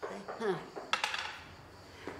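A woman's short 'ha, ha', then about a second in a single sharp clink of a small hard object set down on a glass-topped coffee table.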